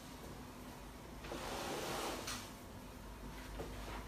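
Faint rustling and shuffling of a patient shifting position on a treatment table, swelling softly about a second in and fading after about two seconds, with no joint crack.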